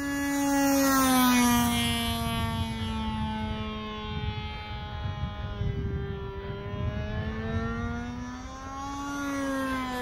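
Nitro glow engine of a radio-controlled model airplane in flight, a steady engine note that is loudest and falls in pitch about a second in, then rises slightly again near the end.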